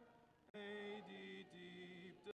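A youth choir singing slow, long-held notes; after a soft dip in the first half second the voices come back in and the pitch steps down twice.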